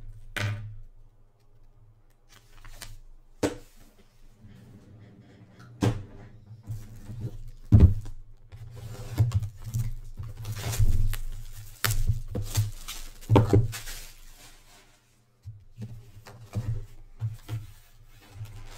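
A cardboard jersey box and a clear plastic jersey display box being handled and opened: a series of knocks and bumps, the loudest about eight seconds in, with scraping and rustling in the middle stretch.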